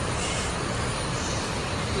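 Steady rush of a nearby waterfall: a continuous noise with a heavy low rumble.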